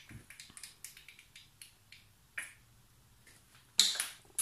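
Small plastic squeeze bottle of green food colouring being squeezed out by hand: a scattering of small sharp clicks, with a louder click near the end.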